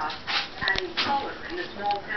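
A dog whining in short, high whimpers, mixed with several sharp clicks and knocks.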